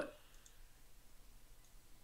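Near silence in a pause between speech, with a few faint scattered clicks.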